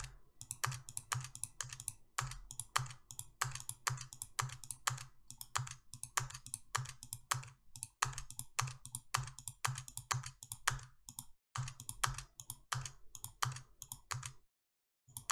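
Computer mouse and keyboard clicking in quick, uneven succession, about three to four clicks a second, with a brief pause near the end, as faces are clicked, selected and deleted one after another.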